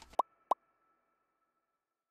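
Two quick rising 'bloop' sound effects about a third of a second apart, from a channel logo animation, with a faint high tone lingering after them.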